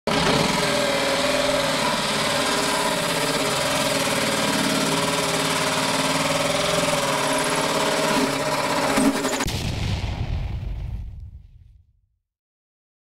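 Power drill with a hole saw cutting into a fiberglass boat gunwale, the motor running steadily under load. About nine seconds in the sound changes abruptly, then fades out near the end.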